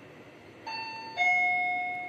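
Fujitec elevator's electronic arrival chime: two tones, a higher one a little after half a second in, then a lower, louder one about a second in that rings on and fades, signalling the car reaching a floor.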